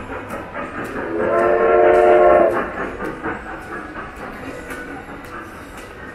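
Ride-on kiddie mall train sounding a loud train whistle held for about a second and a half, starting about a second in. A run of sharp clicks goes on under and after it as the train rolls by.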